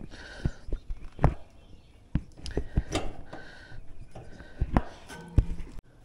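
A run of sharp knocks and clicks, about eight spread irregularly, from handling at the side of an outdoor air-conditioning condenser, with faint short tones between them. The sound cuts off abruptly near the end.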